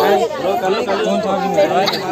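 A group of people talking over one another: lively crowd chatter.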